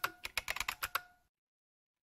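Typing on a computer keyboard: a quick run of keystroke clicks that stops about a second in.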